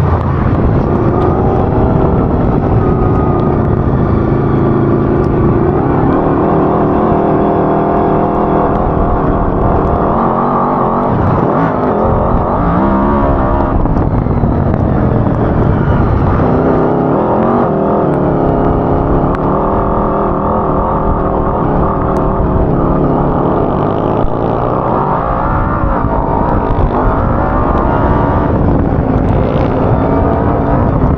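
Homemade off-road buggy's engine running hard under way, its note rising and falling again and again as the throttle is worked, with short dips in revs at a few moments.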